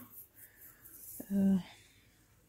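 A woman's voice gives one short, hesitant "ee" a little past halfway through. Before it there is only faint rustling and breath as her hand moves over her face and hair.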